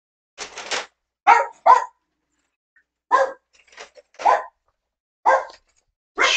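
A dog barking: about six short, single barks at uneven gaps.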